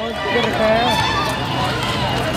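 Several people's voices calling out and talking over a steady background din of an outdoor crowd.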